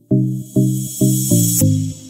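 Electronic background music: short synth notes in a quick rhythm, with a high hissing swell laid over them that cuts off suddenly about one and a half seconds in.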